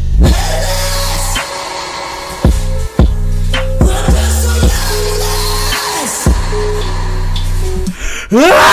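Trap metal song playing: heavy 808 bass with several falling pitch drops under yelled, pained-sounding vocals.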